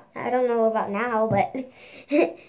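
A young girl's voice making long, drawn-out sounds whose pitch wavers, with no clear words, for about a second and a half.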